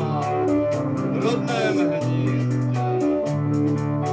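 Rock band music: held bass guitar notes changing about once a second under guitar, over a steady drum beat.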